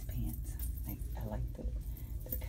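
Indistinct voice sounds, short and wavering with no clear words, over a steady low background rumble.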